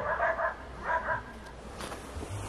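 Two short, high animal-like yelps in quick succession within the first second or so.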